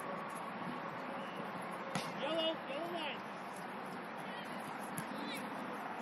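A distant voice calls out twice in quick succession, each short call rising then falling, just after a sharp knock about two seconds in. Steady open-air background noise runs underneath.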